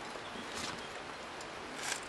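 A climber's shoes and hands scuffing against rock: two brief scrapes, about half a second in and near the end, over a steady hiss.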